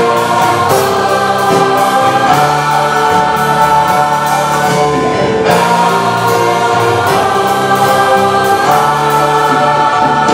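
A large mixed choir of about fifty voices singing in harmony, holding sustained chords that change every second or so.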